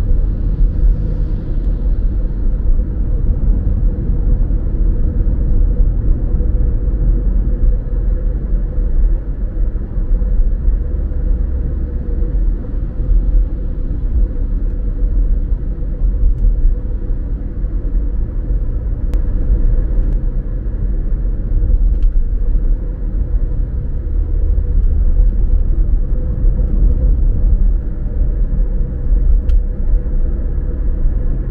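Steady low rumble of a car driving along a road: tyre and engine noise at a constant cruise, with a faint steady hum in it.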